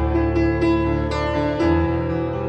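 Slow, gentle solo piano music over a steady sustained 528 Hz tone, the carrier of a binaural-beat meditation track.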